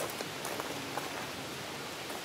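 Steady outdoor background hiss with a few faint short clicks in the first second.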